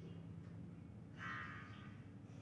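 Faint room tone with a steady low hum, and a brief faint higher-pitched sound about a second in.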